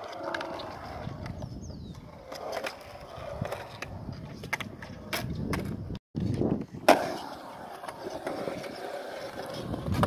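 Skateboard wheels rolling over a concrete skate bowl, a steady rumble with scattered clacks. The sound cuts out briefly about six seconds in, and a sharp clack of the board comes a second later.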